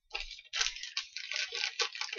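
Packaging rustling and crinkling as a wrapped soap is handled: a busy run of small crackles and clicks.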